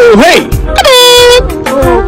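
Loud, horn-like pitched tones over music: a quick swooping note, then one note held for about half a second.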